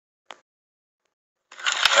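Near silence, then about a second and a half in, a burst of hiss with a sharp crack: a pine tree smouldering inside its trunk, crackling.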